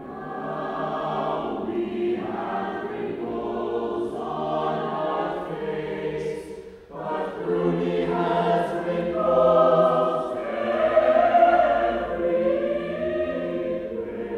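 A choir singing a choral piece. About halfway through it breaks off for a moment, then comes back in louder and swells.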